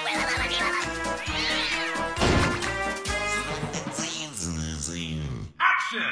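Cartoon theme tune with a steady beat, then goofy cartoon voices sliding up and down in pitch. Just before the end the sound drops out for a moment, then comes back in loudly.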